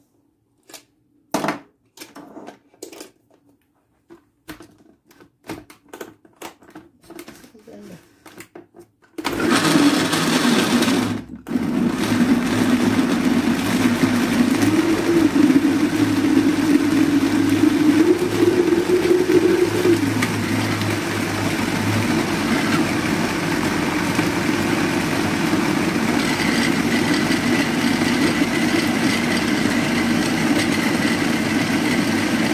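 Countertop blender puréeing dates soaked in milk. First a scatter of light clicks and knocks as the jug and lid are handled, then about nine seconds in the motor starts, cuts out for a moment, and runs on steadily and loudly.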